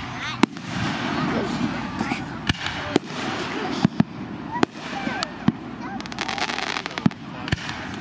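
Aerial firework shells bursting, with a sharp bang every second or so and a quick run of crackles about six seconds in. People talk through it.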